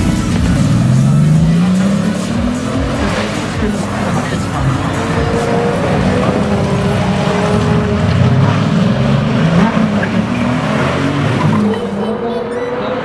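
Bugatti Veyron Super Sport's quad-turbocharged W16 engine accelerating hard, its pitch climbing through the revs more than once.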